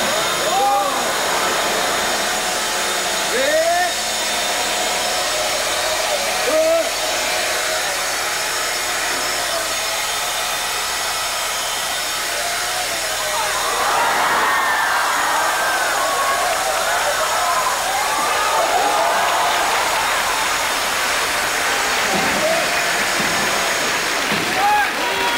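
Small two-stroke chainsaws running, a loud, steady engine noise that holds throughout, with rising and falling pitched sounds over it.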